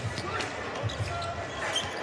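A basketball being dribbled on a hardwood court: a run of irregular low bounces, heard over the open sound of a large, mostly empty arena.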